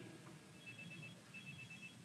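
Faint high electronic beeping in two short trains of rapid beeps, a pattern like a telephone ringing, over the near-silent room tone.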